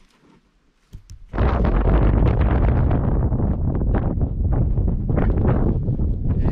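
Wind buffeting the camera microphone: a loud, low rumble that starts suddenly about a second in and keeps going steadily.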